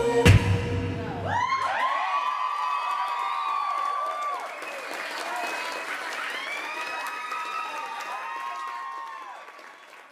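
Dance music stops about a second and a half in, and a small audience applauds and cheers with long whoops, the applause fading away near the end.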